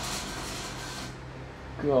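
Microwave magnetron running with a steady electrical hum while a match held above it flares into plasma, a hissing rush that cuts off about a second in. The hum carries on after it.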